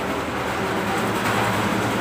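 A steady mechanical rumble with a low hum running under it.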